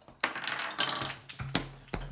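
Plastic game pieces clattering on a wooden table: a rattling burst in the first second, then a couple of sharp clicks near the end.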